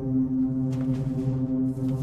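A low, steady droning tone of horror-trailer score, with brief crackles of noise breaking in under a second in and again near the end.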